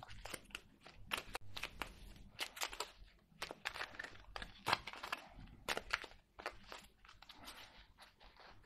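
A deck of oracle cards being shuffled by hand: a faint run of quick, irregular card clicks and rustles.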